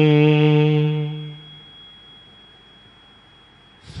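A voice chanting a line of Gurbani, holding its last syllable on one steady note that fades out about a second and a half in. A pause with faint hiss follows, and the chanting starts again right at the end.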